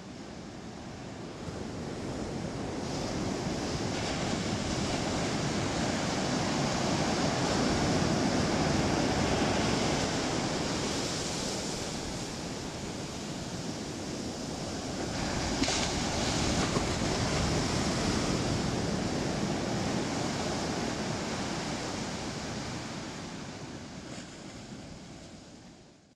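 Ocean surf washing up a sandy beach. The rush of the waves swells twice and fades out at the end.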